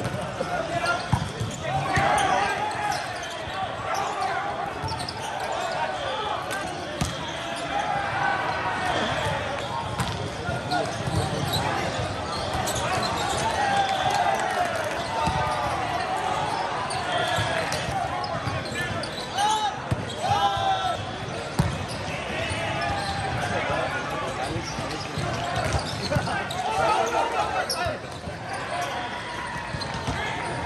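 Volleyball game in a large, echoing hall. Players shout and call over constant overlapping voices, with sharp smacks of the ball being hit and thuds on the floor throughout, and a few louder yells about two-thirds of the way through.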